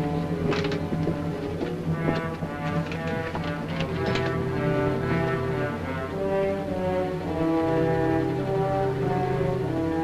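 Orchestral film score: long held notes in chords over a steady low line, the harmony shifting every second or so.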